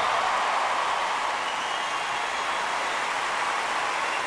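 Large concert audience applauding and cheering: a dense, steady wash of clapping with voices mixed in.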